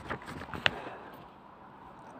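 Pages of a CD booklet being turned and handled: a faint paper rustle with one sharp click about two-thirds of a second in.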